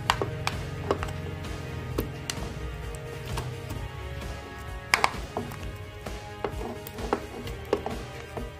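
Irregular knocks and taps as mango slices are scraped off a plastic tub with a plastic spatula and drop into a plastic blender jar, the loudest about five seconds in.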